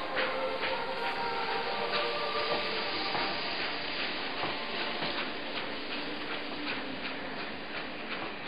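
Steam locomotive hauling a train of tank wagons and a coach past at low speed: a steady hiss of steam with the rumble of the train and scattered clicks from the wheels and couplings.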